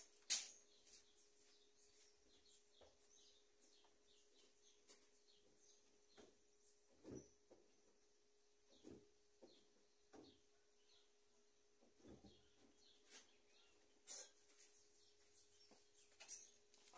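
Near silence, with faint birds chirping repeatedly in the background and a few soft knocks.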